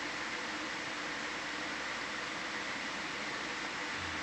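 Steady hiss with a faint low hum, the background noise of an open control-room audio line, with no distinct events.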